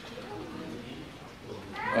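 Faint voices in a hall, with a thin, high voice in the first second; a man starts speaking into a microphone near the end.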